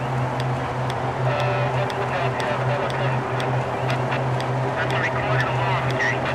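Steady low hum of idling emergency vehicles, with a faint murmur of voices in the background.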